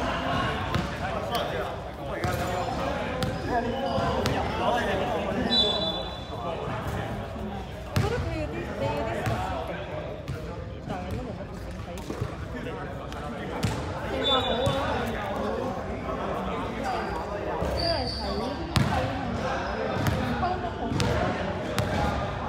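Indistinct chatter of players in a reverberant sports hall, with a basketball bouncing on the court in scattered knocks and a couple of brief high squeaks.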